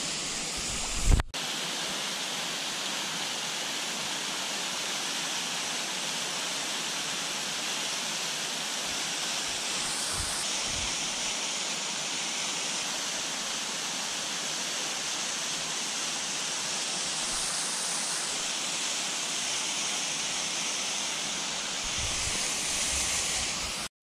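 Steady rush of water from a small waterfall and the shallow stream running below it. A single short knock about a second in.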